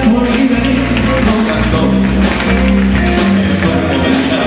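Live band music with a drum kit keeping a steady beat under held notes from guitar and brass such as trombone.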